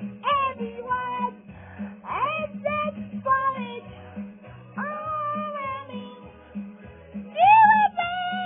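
A Christmas radio stream playing from a computer: a song with singing over a steady repeating bass beat.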